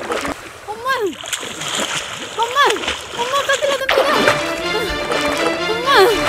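Water splashing as a person thrashes in a shallow river, with a voice crying out in several rising-and-falling calls. Background music with held tones comes in about four seconds in.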